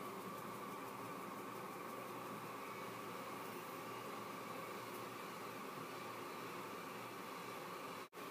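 Faint, steady hiss of room tone with nothing else standing out.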